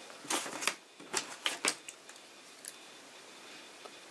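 Small craft scissors handled and opened: a few sharp clicks and light rustles in the first two seconds, then quiet room tone.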